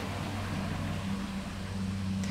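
A steady low motor hum with a noisy wash over it, running evenly.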